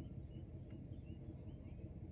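Quiet outdoor background: a low steady rumble with a few faint, short bird chirps scattered through it.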